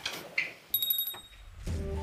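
A shop-door bell rings briefly with a few quick high chimes about three-quarters of a second in as someone enters, fading out quickly. Background music with low sustained tones begins near the end.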